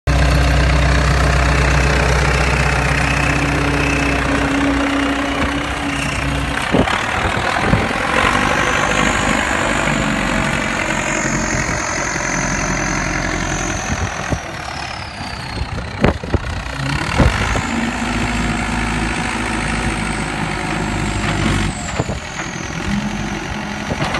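Backhoe loader's engine running, heard close in the first few seconds and then working as the machine moves and lifts its front loader, with a high whine that rises and falls and a few sharp metallic clanks.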